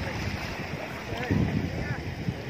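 Wind buffeting the microphone over shallow surf washing around, with a louder low gust a little past halfway and faint distant voices.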